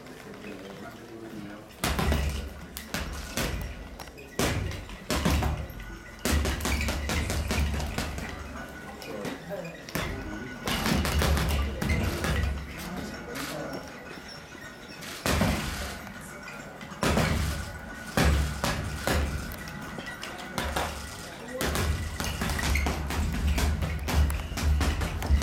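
Boxing gloves striking a double-end bag in fast flurries of sharp smacks. Music with a heavy bass and background chatter play underneath.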